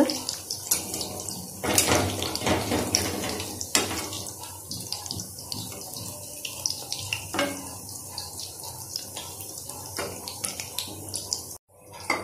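Sahjan (drumstick) flower pakoras in gram-flour batter deep-frying in hot oil in a kadhai. The oil sizzles steadily with dense crackling, and a few louder crackles stand out. The sound cuts off suddenly shortly before the end.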